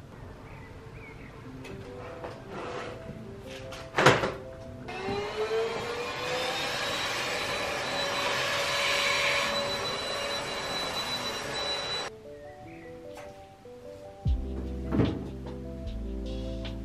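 A sharp knock, then a handheld vacuum cleaner switched on, its motor whining up to speed and running steadily for about seven seconds while sucking up a bug, then cutting off suddenly. Background music plays throughout.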